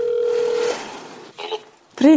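Video call ringing tone: one steady electronic tone that stops under a second in, followed by line hiss and a brief faint voice.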